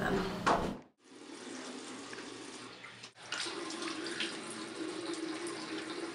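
A bathroom sink faucet running into the basin, with splashing as a man scoops water onto his face.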